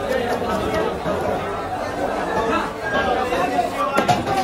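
Chatter of several voices talking at once, a busy market crowd. Under it is the faint scrape of a knife scaling a large rohu carp.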